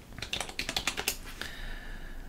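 Computer keyboard being typed: a quick run of about a dozen keystrokes as a password is entered, followed near the end by a faint steady tone.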